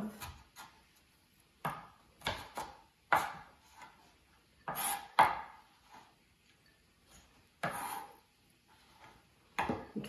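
Kitchen knife chopping diced carrots on a cutting board: about ten separate knocks of the blade on the board at an uneven pace, with short pauses between them.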